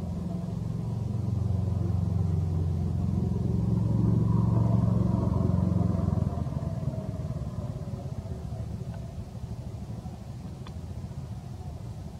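A motor vehicle's engine passing by: a low drone that grows louder, is loudest about four to six seconds in, then fades away.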